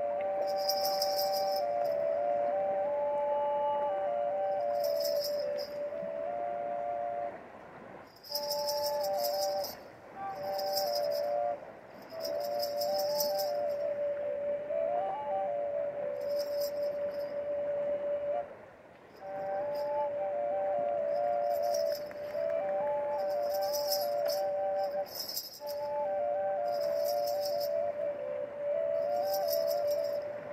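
Dvoyanka, a Bulgarian double flute, playing a stepping melody above a steady drone held on its second pipe, in phrases broken by short breaths. Clusters of ankle bells and basket rattle shake in now and then.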